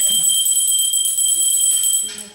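Puja hand bell rung without pause during the aarti lamp offering: a steady, loud ringing made of several clear high tones.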